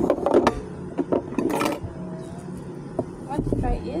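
Oyster shells knocking and clicking against each other and the plate as they are picked up: a few sharp clicks, with low voices in between.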